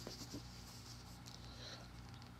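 Faint rustle of a picture book's paper pages being handled, strongest near the start, over a low steady hum.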